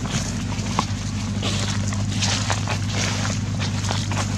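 Footsteps crunching through dry leaf litter, several light irregular crunches a second, over a steady low hum.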